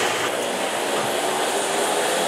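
Cooling tray of a RoboLabs RoboSugar 20 caramel corn machine running at its high speed: a steady, even mechanical noise.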